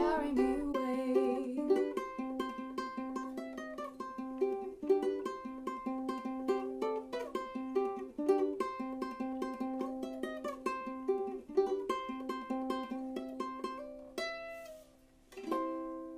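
Solo ukulele, plucked: a steady run of picked notes and chords, thinning out near the end, a brief pause, then one last chord left to ring.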